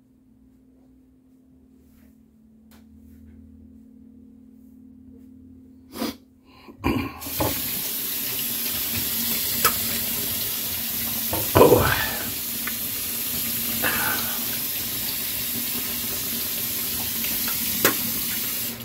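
Kitchen sink tap turned on after a couple of knocks about seven seconds in, then water running steadily into the sink.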